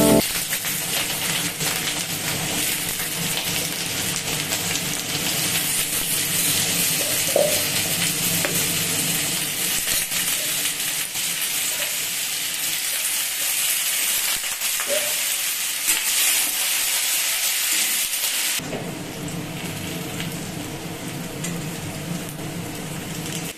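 Cubed potatoes frying in hot oil in a metal kadai: a steady sizzle that softens noticeably about three-quarters of the way through.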